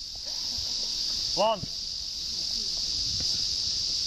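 Insects calling in a steady, high-pitched, unbroken drone.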